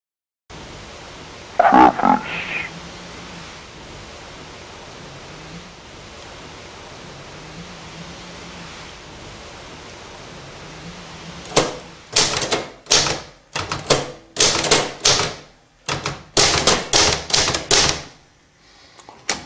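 Manual typewriter keys striking paper in a quick, uneven run of sharp clacks, about two to three a second, as a short line of text is typed; they start in the second half. Before that there is a steady hiss, and about two seconds in a short voice-like sound.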